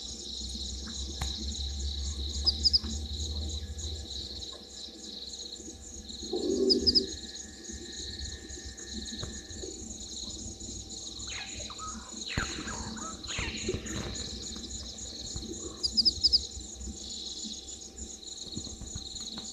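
Bushveld evening ambience: insects chirring steadily at a high pitch, with quick three-note bird chirps every few seconds. A short low call comes about six seconds in, and a few falling calls come after about eleven seconds.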